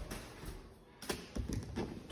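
A few light knocks and taps, starting about a second in after a quieter first second.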